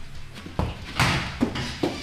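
A football kicked in socks on artificial turf: one sharp thud about halfway through, followed by two lighter knocks.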